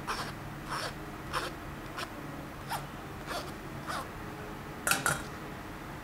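Metal spoon scraping strained rice porridge off a mesh sieve and against a glass bowl: short scraping strokes about every half second, with two sharper clicks close together near the end.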